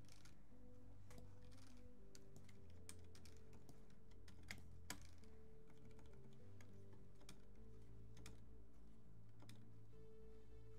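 Quiet synthwave background music with steady held low synth tones, and scattered sharp small clicks over it, like keystrokes on a computer keyboard.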